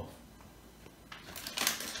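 Crinkling, rustling noise that starts about a second in and grows louder, with the sharpest bursts in the last second.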